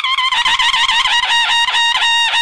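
Conch shell (shankh) blown as a war call: a high horn-like tone that wavers at first, then breaks into quick repeated pulses, about five a second.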